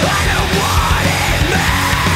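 Loud heavy rock song with shouted vocals over the full band.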